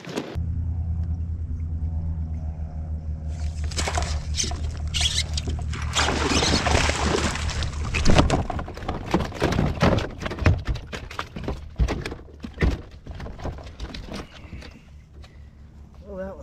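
A hooked largemouth bass splashing and thrashing at the surface, then swung aboard and landing in a plastic kayak with several sharp thunks, the loudest about eight seconds in, as it flops on the deck. A steady low hum runs underneath.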